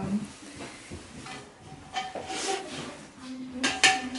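A metal kettle handled at an old enamel stove, giving a few light metallic clinks and knocks.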